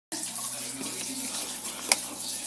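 GE dishwasher running: a steady rush of water over a low steady motor hum, with one sharp click just before the end.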